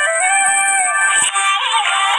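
Recorded Telugu song playing as dance music: a sung melody with pitch bends and held notes over its backing music.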